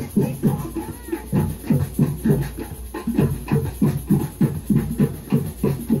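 A street drum group playing together, a fast, steady beat of low drum strokes several times a second.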